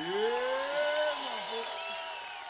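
A trombone slide glissando: one pitched tone sweeps up over about a second, then falls back down. Crowd cheering and applause run underneath.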